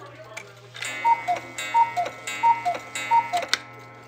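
Mechanical cuckoo clock calling four times: four two-note cuckoo calls, a higher note then a lower one, coming about every 0.7 s and each starting with a click. A ringing tone lingers under the calls.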